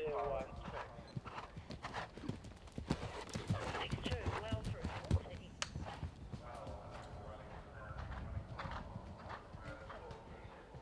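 Hoofbeats of an event horse galloping on turf toward and over a cross-country log fence. The hoofbeats grow louder, are heaviest around the middle and fade as the horse gallops away.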